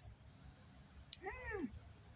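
A metal nail clipper snaps shut on a toenail at the start, and again about a second in. Right after the second snap a cat gives one short meow, rising and then falling in pitch.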